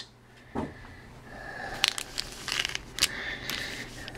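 Faint rustling and crinkling with a few light clicks and knocks as gloved hands handle wrapped trading-card packs and the emptied cardboard box.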